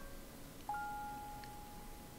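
Faint background music: a soft bell-like note sounds about two-thirds of a second in and slowly fades away.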